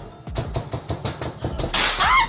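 Gunshots fired in rapid succession, several a second, hitting a house, picked up by a phone's microphone during a live stream. A louder burst comes near the end.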